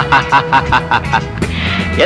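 A man laughing in a fast run of short pitched bursts, about seven a second, that stops about one and a half seconds in, over film music with a steady held note.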